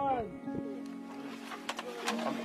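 Background music with steady held notes, a voice trailing off right at the start and a few faint clicks later on.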